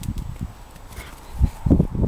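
Pharaoh hound's paws thudding on the turf as it runs and turns, in irregular low thumps, loudest near the end.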